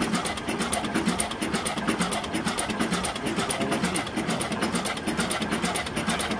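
Old Schlüter two-cylinder stationary diesel engine running steadily, with an even, rapid beat from its firing strokes.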